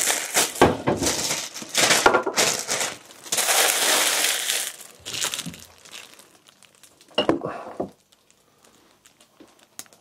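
Crinkling and rustling of packaging with light knocks as kitchen ingredients are handled and opened. It is busiest in the first five seconds, with one more short rustle about seven seconds in.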